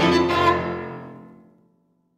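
Violin and piano playing the final chord of a movement, which then dies away over about a second into silence.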